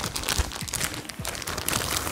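A plastic packaging bag crinkling and crackling irregularly as it is pulled open by hand.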